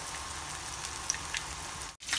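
Breaded fish fillets shallow-frying in hot oil in a frying pan: a steady sizzle with scattered small crackles and pops. The sound cuts out for an instant at the very end.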